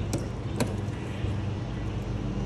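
Travel trailer entry door handle tried against a locked deadbolt: two short sharp clicks about half a second apart. A steady low mechanical hum runs underneath.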